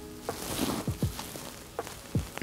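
Clothing rustle close to the microphone, with several soft thumps, as the arms move while wrapping fishing line. Faint background music with held notes fades out early on.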